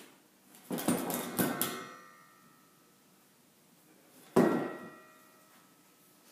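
Metal clanking of gym weights: a quick run of ringing clanks about a second in, then one louder clank near four and a half seconds that rings on for a moment.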